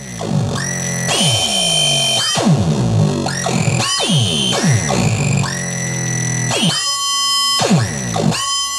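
Synthrotek Chaos NAND Eurorack module playing a noisy, glitchy synth beat. Its three CV inputs are driven by divided clock outputs from a Circuit Abbey G8 in integer mode. Low hits fall in pitch about twice a second, under shrill, buzzy tones that cut in and out every second or so.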